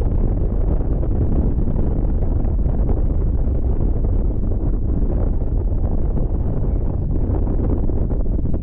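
Wind buffeting the microphone: a steady, loud rumble with small fluctuations in strength throughout.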